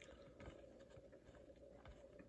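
Near silence, with faint soft ticks and rustles of cardboard baseball trading cards being slid one by one off a stack.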